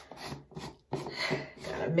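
A sharp click and a brief rubbing sound as something is handled, then a woman's voice speaking.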